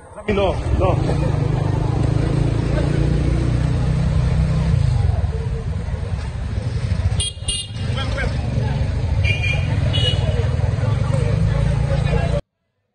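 Street noise under a heavy, steady low rumble: voices of people in the street, and short high-pitched horn toots, two close together about seven seconds in and more a couple of seconds later.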